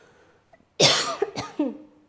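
A woman coughing: a loud cough about a second in, followed by a second, weaker one.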